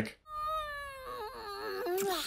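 An anime character's long, exaggerated voiced kissing sound for a healing kiss: one high drawn-out note that slides down in pitch and wobbles in its second half.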